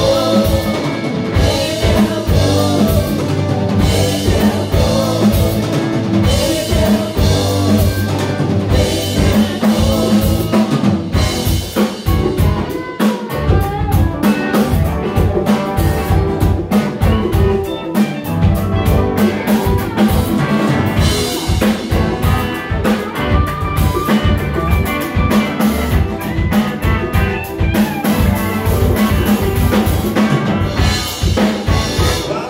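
Live rock band playing an instrumental passage with no singing: a drum kit keeping a steady beat under electric guitars, electric bass and electric keyboard.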